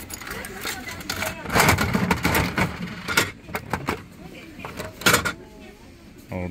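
Coins going into a gashapon capsule-toy machine, then its handle turned with a run of sharp ratcheting clicks. A louder knock about five seconds in is the plastic capsule dropping out.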